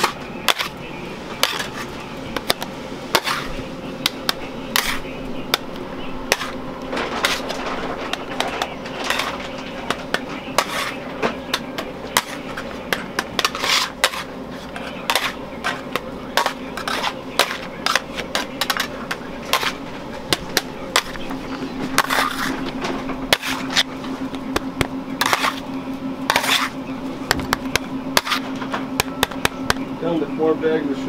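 Metal bench scrapers clacking and scraping against a marble slab as a batch of hot hard candy is folded and spread, with many sharp taps and clicks throughout. A steady low hum runs underneath and grows louder about two-thirds of the way through.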